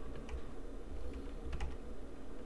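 Computer keyboard typing: a few separate keystrokes clicking at an unhurried pace over a low steady hum.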